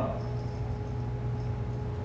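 Room tone: a steady low hum with a faint, thin steady tone above it.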